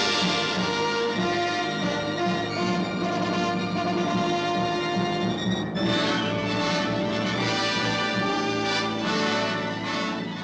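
Orchestral music, with a brief break and a new phrase coming in about halfway through.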